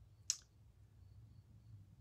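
A single short, sharp click about a quarter of a second in, over quiet room tone with a faint low hum.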